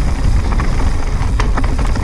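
A mountain bike riding fast downhill over dry, stony singletrack, heard close up on the bike: a loud, continuous rumble of tyres and frame over the dirt, with sharp clacks from stones and bike parts, one about one and a half seconds in and another near the end.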